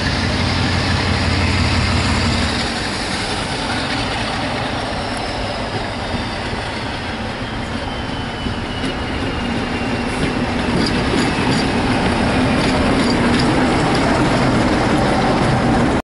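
British Rail Class 47 diesel locomotive with its Sulzer engine working as it hauls a train of coaches towards and past, getting louder as it comes close. A faint whine falls slowly in pitch, and short clicks from the wheels join in the second half.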